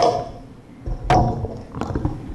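A few sharp knocks with low thumps: one at the start, a loud one about a second in, and a smaller one near the end.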